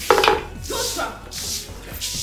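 A hand broom sweeping a floor in about three quick swishing strokes, with faint background music underneath.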